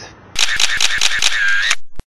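Short outro sound effect: a quick run of about eight sharp clicks over a ringing tone, the tone held briefly at the end, then cut off suddenly.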